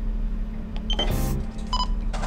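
Two short electronic beeps from a JRC NCT-196N DSC modem as its keys are pressed to send a DSC test call: a high beep about a second in, then a lower, buzzier beep near the end. A steady low electrical hum from the radio console runs underneath.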